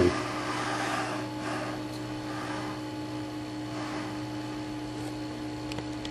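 A steady low mechanical hum with a faint hiss and a small click near the end.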